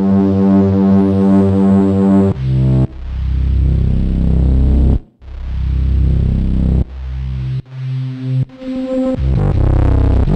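Arturia MiniFreak synthesizer playing the 'Doomfloot' patch, a doomy bass sound that began as a flute patch. A held chord comes first, then about two seconds in two deep notes each swell in slowly, the patch's soft onset when keys are played gently. Shorter notes follow near the end.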